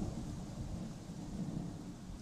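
Thunder: a long, low rumble that slowly fades.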